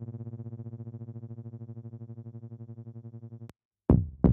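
Digitally controlled analog polyphonic synthesizer playing a SynDrum-style percussion patch: one long, low pitched note with a fast wavering, slowly fading, that cuts off abruptly about three and a half seconds in. Just before the end, a short, sharp synthesized bass-drum hit.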